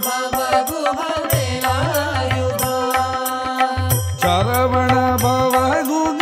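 Tamil devotional bhajan to Murugan: a gliding sung melody over a steady drone, with a hand-drum rhythm that enters about a second in and breaks off briefly near four seconds.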